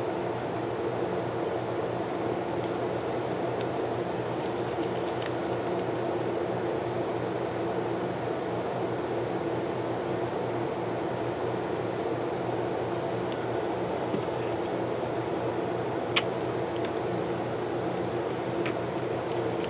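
Steady machine hum of room noise, with faint scattered ticks and paper rustles as fingers press a strip of washi tape and stickers onto planner pages. One sharper click comes near the end.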